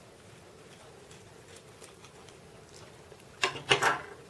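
Blunt scissors snipping through a thick bundle of wool yarn: faint, scattered snips and rustles, then two louder, short cutting and handling noises near the end.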